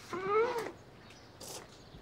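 A single short cry near the start, about half a second long, rising then falling in pitch, with a few faint clicks around it.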